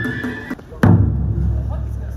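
A high held flute note breaks off about half a second in. Just under a second in comes one loud strike on a danjiri float's taiko drum, which rings out and dies away.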